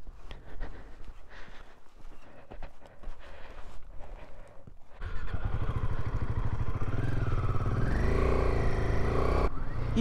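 For the first few seconds there is gusty noise with small knocks. About halfway in, the single-cylinder engine of a Royal Enfield Himalayan 450 motorcycle comes in suddenly and runs loudly, its pitch rising and falling as it is ridden.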